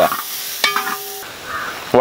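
Sliced onions sizzling as they fry in a wide pan, stirred with a wooden spatula that scrapes and knocks lightly on the pan. A short steady tone sounds briefly near the middle.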